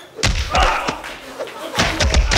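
Fight impacts: a heavy thud of a blow shortly after the start and another near the end, with voices in between.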